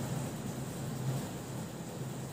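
Room tone: a steady low hum with faint hiss and no distinct events.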